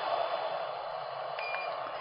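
Handheld LED dental curing light running with a steady, slowly fading whirring hiss while it light-cures freshly applied gingiva-coloured resin on a printed denture. There is a short faint beep about one and a half seconds in.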